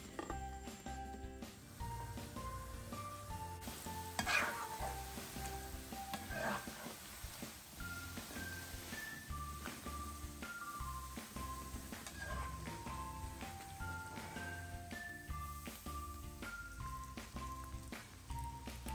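Cubes of chin chin dough sizzling as they fry in hot oil, under a light melodic background music track. Two brief louder sounds come about four and six and a half seconds in.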